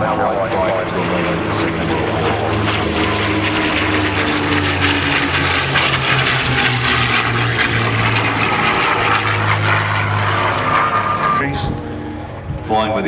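A pair of P-51D Mustangs flying overhead, their Packard Merlin V-12 piston engines and propellers running in a steady drone, with the pitch shifting gently as they pass.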